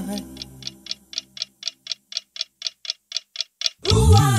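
Clock-like ticking, about four sharp ticks a second, serving as the bridge between two songs in a medley. The last held notes of the previous song fade out under the first ticks.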